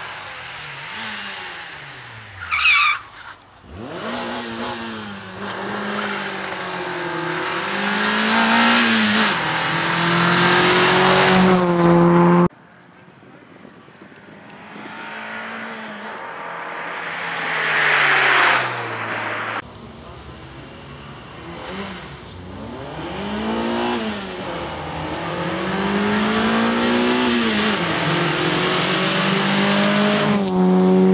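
Renault Clio rally car's engine revving hard, its pitch climbing and dropping again and again as it accelerates and shifts gear through a tarmac stage. A short, loud, high squeal comes about three seconds in, and the engine sound cuts off abruptly twice.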